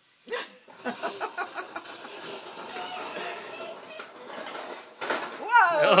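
Voices of a family talking and calling out. Near the end comes a loud exclamation of 'oh' with laughter, the loudest sound here, as a child on a toy tricycle tips over.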